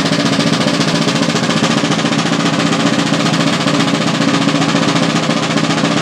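Snare drum and bass drum of a fife and drum corps playing a long, unbroken drum roll, loud and steady.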